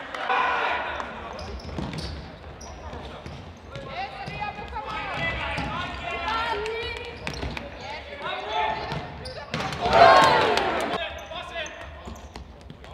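Futsal game play in a sports hall: players calling out and the ball being kicked and bouncing on the hard court floor. The loudest call comes about ten seconds in.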